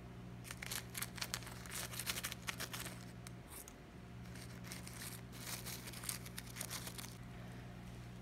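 Plastic bag crinkling as caustic soda (lye) flakes are shaken out of it into a glass of water, with many small irregular ticks and rustles.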